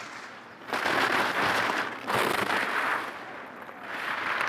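Racing skis' edges scraping and chattering across hard-packed snow through two carved giant slalom turns, each a rasping surge of about a second.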